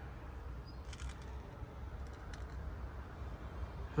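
Quiet low hum of the car's cabin, with a few faint clicks and rustles from a handheld phone being moved around.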